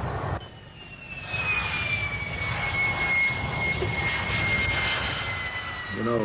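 F-16 fighter jet engine during the takeoff run: a low rumble under a high whine that comes in about a second in and slides slowly down in pitch.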